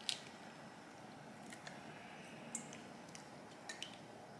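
An egg being cracked and separated by hand over a stainless steel bowl: one sharp crack of eggshell right at the start, then a few small faint clicks of shell.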